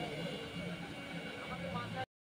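Quiet background chatter of several people's voices, with a steady low hum underneath.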